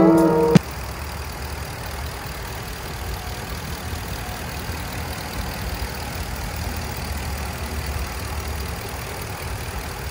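Background music cuts off about half a second in, leaving the 2020 Ram 1500 Classic's 5.7-litre HEMI V8 idling steadily with a low, even note.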